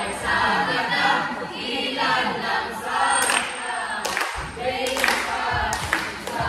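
A group of voices singing together without instruments, in phrases that swell about once a second. A few sharp hits cut through in the second half.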